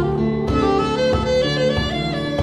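Instrumental band music: sustained melody notes from saxophone and keyboards over percussion, with a steady beat about twice a second.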